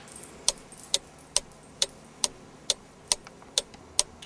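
A steady run of sharp, evenly spaced ticks, a little over two a second.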